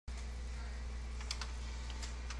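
A steady low electrical hum with two quick clicks a little over a second in.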